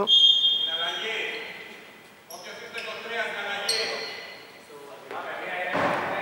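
Voices of players calling out, echoing in a large, nearly empty indoor basketball hall, with a basketball bouncing on the hardwood floor as a free throw is taken.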